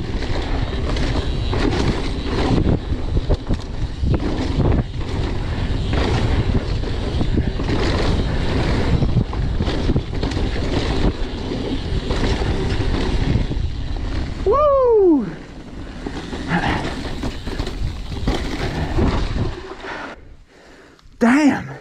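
Mountain bike ridden fast down a dirt singletrack, heard from a chest-mounted camera: wind buffeting the microphone over tyre noise and the knocking and rattling of the bike over the rough trail. About fourteen seconds in, a short tone falls sharply in pitch, and the noise then drops as the bike slows.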